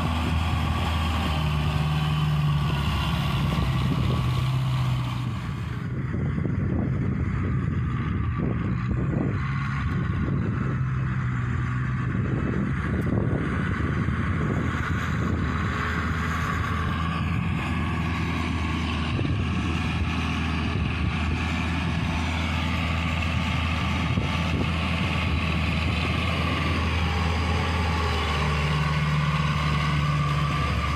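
Claas farm tractor's diesel engine running steadily under load while tilling a muddy rice paddy.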